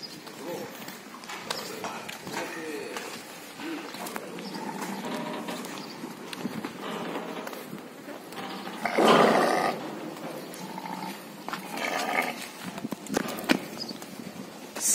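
Sheep in a farmyard, with one loud bleat about nine seconds in and a shorter one about twelve seconds in, among quieter scattered sounds of the animals moving.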